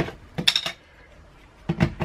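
Handling clicks and knocks of a camera as its battery is swapped, heard close to the microphone: a cluster of sharp clicks about half a second in and another near the end.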